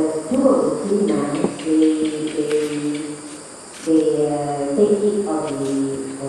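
Chanting voice in long held tones that step from one pitch to another, with a short break a little before four seconds in.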